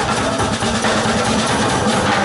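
Live progressive rock band playing a loud instrumental passage: keyboards and bass sustain a held low note over continuing drums.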